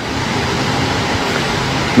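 Steady, even background noise with no speech, holding level throughout a pause in talk.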